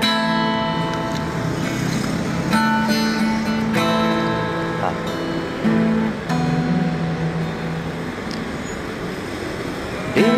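Acoustic guitar playing an intro: a handful of chords struck and left to ring, the playing easing off slightly near the end.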